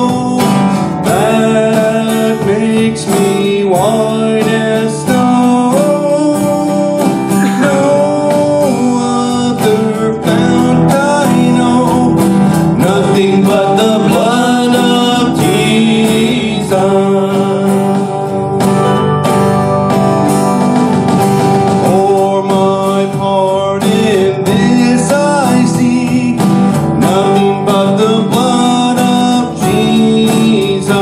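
Live worship song: an acoustic guitar strummed while a man sings the melody into a microphone.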